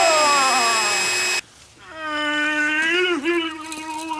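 A steady electronic buzz with a falling wail sliding down over it, cut off abruptly about a second and a half in. After a short gap, a long ghostly moan held on one pitch, dipping briefly near the end.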